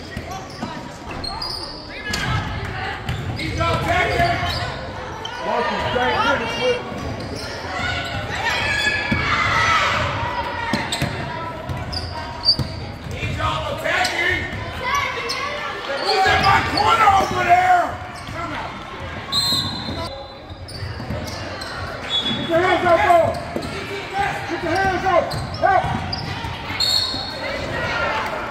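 A basketball bouncing on a hardwood gym court during live play, with players and spectators calling out across a large, reverberant gym.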